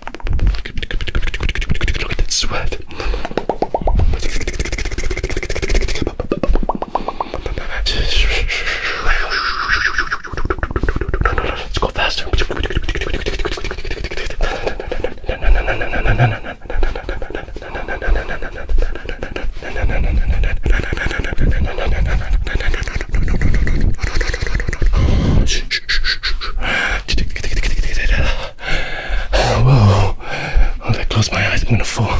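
Fast, aggressive ASMR mouth sounds, rapid wet clicks, pops and smacks made right against a binaural microphone's ear capsules, with bursts of low rumble.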